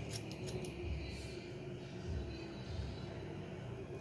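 Scissors snipping through a lock of long hair, several short cuts in about the first second and a half, then quieter.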